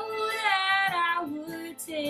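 A woman singing a folk-style ballad without words in this phrase: one held note that slides down in pitch over the first second, then a lower note. Acoustic guitar and violin accompany her.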